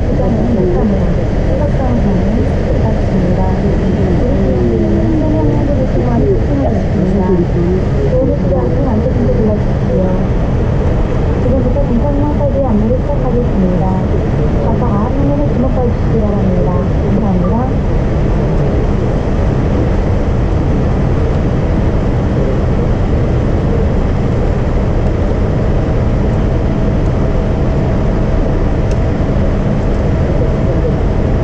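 Steady low rumble of a Boeing 787's cabin on the ground, heard from a window seat, with muffled voices over the first half. A steady high whine sets in about 25 seconds in and holds.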